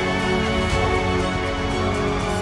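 Background music from a TV drama's score: held melodic notes over a dense low accompaniment, at an even level.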